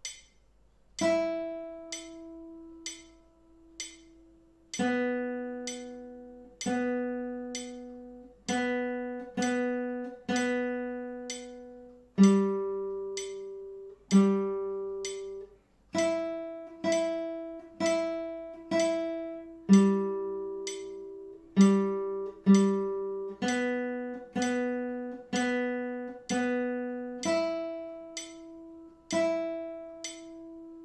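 Classical nylon-string guitar playing a slow beginner's exercise on the open top three strings (E, B and G): single plucked notes, some ringing for four beats, some for two, some for one. A steady click ticks along throughout.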